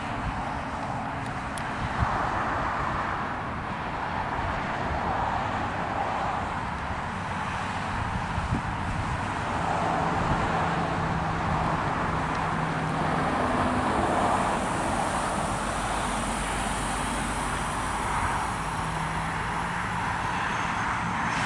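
Steady outdoor background noise: an even wash of sound with a faint low hum, with no speech.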